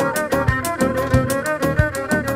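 Kabak kemane (Turkish gourd spike fiddle) bowed through a pickup, playing a quick folk melody over a steady percussive beat.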